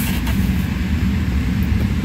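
Steady low rumble of a car on the move, heard from inside the cabin: road and engine noise.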